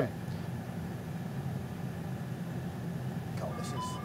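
Steady low rumble in a flight simulator cockpit. About three and a half seconds in, a cockpit warning alarm starts: short electronic beeps alternating between two pitches.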